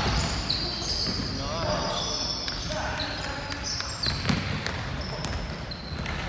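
Indoor basketball game on a hardwood court: sneakers giving many short, high squeaks and a basketball bouncing, with two clear thumps in the second half. A player's voice calls out briefly early on.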